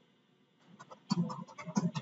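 Computer keyboard keystrokes typing out an email address, a few sharp clicks, and over the last second a short, low, wordless voice sound.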